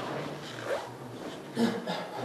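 Quiet lecture-room pause with a low steady hum, and a brief faint voice murmuring near the end.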